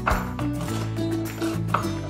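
Background music with a steady beat and sustained chords.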